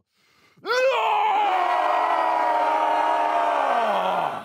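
A person's long, drawn-out yell: it rises sharply about a second in, holds steady for about three seconds, then falls away near the end.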